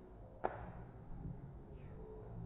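A single sharp crack about half a second in, over a low background rumble.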